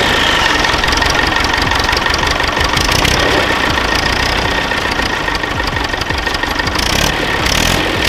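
OM 513R tractor's four-cylinder inline diesel engine running steadily, with a cast-iron block and head.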